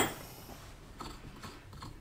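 A sharp metal clink at the very start, then a few faint clicks as a steel bolt is taken from a wheel-bearing tool kit's case and brought to the wheel hub.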